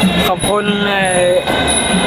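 A young man's voice saying "thank you" in Thai over a steady background hum with constant high-pitched tones.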